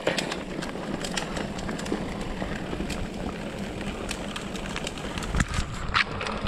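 Specialized Turbo Levo electric mountain bike rolling along a dirt trail: tyres running over dirt and small stones with frequent clicks and rattles from the bike, over a steady low rumble.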